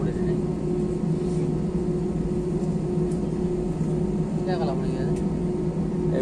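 Steady cabin noise of an airliner taxiing, its jet engines giving a constant hum heard from inside the cabin. A voice speaks briefly about four and a half seconds in.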